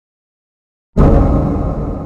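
A jump-scare sting from a horror film soundtrack: a sudden, loud, deep boom hits about a second in out of dead silence and dies away slowly.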